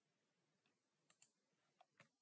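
Near silence, broken by two faint computer mouse clicks in quick succession a little after a second in and a third, fainter click near the end.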